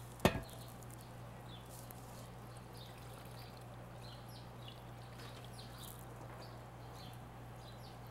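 Melted candle wax poured in a thin stream from a glass measuring pitcher into aluminium candle molds, a faint trickle with small ticks, over a steady low hum. A single knock about a quarter second in, as a metal pitcher is set down on the table.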